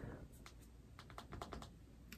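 Faint light clicks and taps, a handful of them in the middle of a near-silent room tone.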